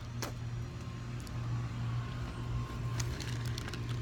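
Handling noise from a phone carried while walking, with a couple of light knocks over a steady low hum.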